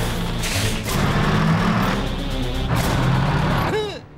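Cartoon soundtrack: action music over a loud rumbling, crashing noise effect.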